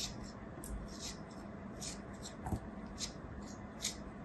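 A snap-off utility knife blade slicing and scraping through packed kinetic sand: a quiet series of short, crisp, scratchy crunches, with one soft knock about two and a half seconds in.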